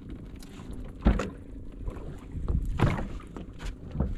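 Small fishing boat's engine running steadily, with two heavy knocks about one and three seconds in and lighter clicks and taps on the boat.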